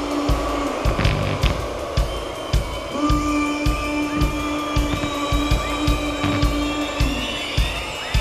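Live metal band playing an instrumental passage: distorted guitars and bass hold a note over a steady kick-drum beat. The held note drops out about a second in and comes back around three seconds.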